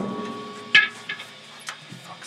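A rock band's electric guitar and bass ring out and fade after the drums stop. A short sharp guitar note sounds about three quarters of a second in, followed by a few faint ticks.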